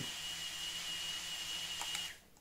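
Small single-cell (18650-powered) FPV quadcopter's brushless motors and propellers spinning at idle: a steady high whine over an airy hiss.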